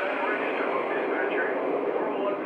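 Sound system of a model Union Pacific 4014 Big Boy steam locomotive playing a steady hiss of steam, with a faint radio-style voice mixed in.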